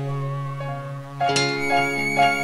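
Nylon-string classical guitar played solo: a chord rings and fades, then fresh fingerpicked notes start a little past halfway.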